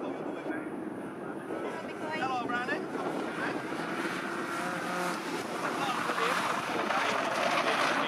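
BMW cup race car engines revving as two cars race around the circuit, the sound growing louder in the second half.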